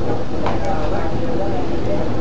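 Steady low rumble of a gas stove burner running under a steel wok, with faint voices in the background.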